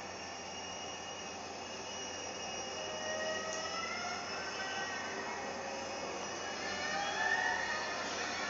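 Eerie, dissonant film-score music played through a TV speaker: sustained tones over a hissing bed, with slow rising pitch slides about halfway through and again near the end.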